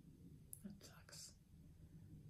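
Near silence: quiet room tone with a few faint, short breaths about half a second and a second in.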